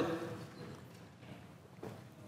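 Quiet room tone while a man sips water from a drinking glass at a lectern, with one faint knock near the end as the glass is set down.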